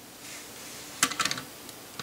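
Hard LEGO plastic clattering: a quick run of sharp clicks about a second in, the first the loudest, with a few lighter clicks after, as the small plastic bug built around the EV3 infrared remote is set down on a hard tabletop.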